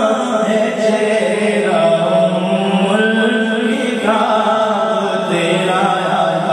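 A man singing a naat solo into a microphone, holding long notes that bend and waver in pitch.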